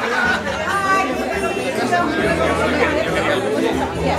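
Many people talking at once, their overlapping conversations blending into a steady party chatter in a large room.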